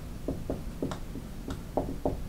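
Dry-erase marker writing on a whiteboard: a run of short, separate strokes, about six in two seconds.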